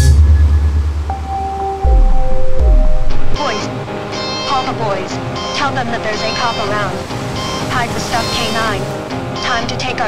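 A live rock band ends a song: the last low chord rings, then pitches slide downward with a couple of low thumps. After that comes a loud crowd hubbub of many voices between songs.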